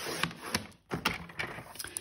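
Sliding-blade paper trimmer finishing a cut through patterned paper, a short scraping rasp, followed by several light clicks and rustles as the cut sheet is slid off and turned over on the trimmer.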